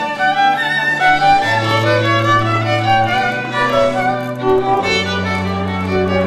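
String music: a violin melody over long held low bass notes that change every second or two.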